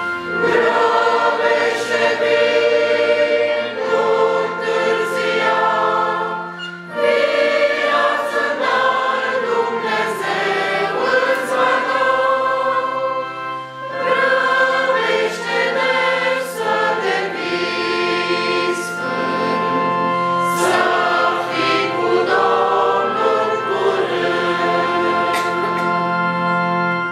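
A church congregation singing a closing hymn together, many voices in Romanian, in long sung phrases with short breaks for breath about 7 and 14 seconds in.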